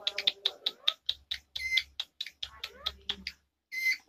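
Indian ringneck parrot making a rapid run of sharp clicks, about five or six a second, broken by two short high squeaks, one in the middle and one near the end.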